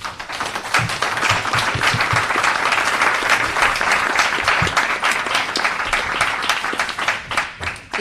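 Audience applause: many people clapping together, a dense, steady patter that eases slightly near the end.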